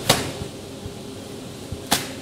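Thin white plastic carrier bag yanked hard between two hands: two sharp snaps of the plastic film, one just after the start and one just before the end, the second as the bag tears.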